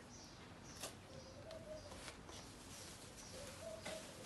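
Faint background birds: short, repeated high chirps and a few low, dove-like coos. There is one soft click a little under a second in.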